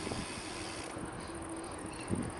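Steady, fairly quiet rolling noise of a touring bicycle moving along a paved road, with a faint low hum.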